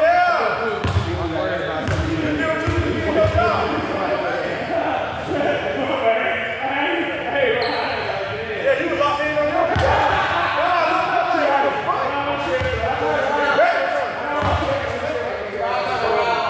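A basketball bouncing on the court a handful of times, as dull thuds spread through, under indistinct voices of several people talking over each other throughout.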